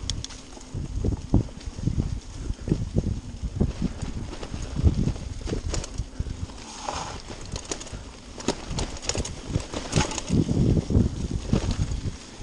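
Mountain bike rattling and knocking over a rough, leaf-covered dirt trail at speed, with tyre noise and wind on the microphone; the knocks come irregularly, a few of them sharp.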